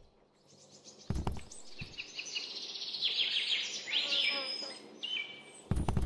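Bird-like chirps and short high whistles, some falling in pitch, between a few sharp clicks.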